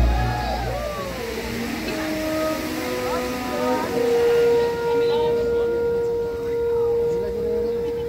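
Outdoor crowd of spectators talking and calling out in a lull after the show's music cuts off, with a long steady tone coming in about halfway through.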